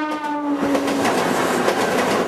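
Mumbai suburban local train sounding its horn: one steady note that drops slightly in pitch and ends about a second in, over the rolling noise of the moving train.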